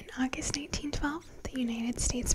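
A woman's soft-spoken, half-whispered speech: the opening words of a sentence that the transcript missed.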